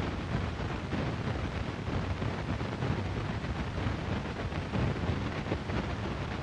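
Steady hiss, crackle and low rumble of a worn 1930s optical film soundtrack, with no clear distinct sound above it.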